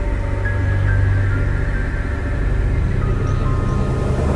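Background music with held, steady tones over a deep low drone.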